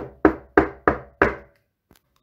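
Knocking on a wooden door: five knocks, about three a second, each with a short ringing decay.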